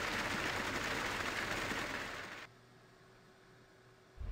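Steady rushing hiss of flux material pouring down the feed chutes into the steel converter, an animation sound effect. It cuts off suddenly about two and a half seconds in, leaving near silence.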